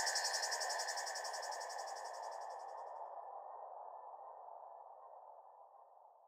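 Insects chirping in a cricket-like trill over a softer, lower hiss, all fading out. The high trill is gone about three seconds in, and the rest dies away near the end.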